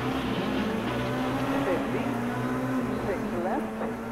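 Rally car engine running at steady high revs, with brief snatches of a voice over it.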